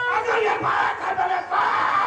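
A man's voice shouting loudly over the stage loudspeakers, in a long drawn-out call.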